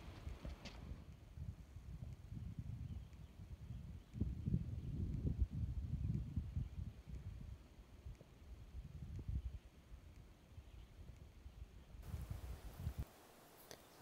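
Wind buffeting the microphone outdoors: an uneven low rumble in gusts, strongest a few seconds in, that cuts off suddenly near the end.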